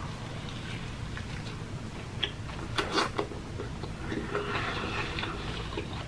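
A person chewing a mouthful of fried chicken sandwich close to the microphone: soft wet squishes with a few sharp mouth clicks, the clicks clustered around two to three seconds in.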